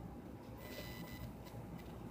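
Quiet room tone with a faint high-pitched electronic tone lasting under a second, starting about half a second in.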